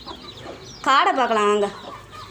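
Mother hen giving one drawn-out call about a second in; its pitch rises briefly, then falls.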